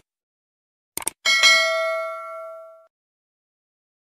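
Two quick clicks about a second in, then a bright bell ding that rings out and fades over about a second and a half: the click-and-notification-bell sound effect of an animated subscribe button.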